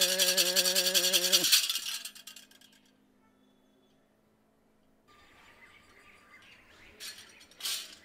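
A chanted call held on one note over shaken rattles, ending about a second and a half in. Then near silence, and later faint background noise with two short bursts near the end.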